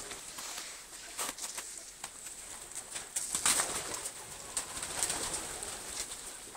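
Pigeons cooing, with a few sharp clicks.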